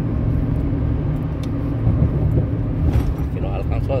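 Steady low road and engine rumble inside a pickup truck's cab at highway speed. A voice starts near the end.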